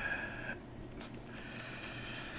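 Faint scratching of a pen stylus on a graphics tablet during digital drawing.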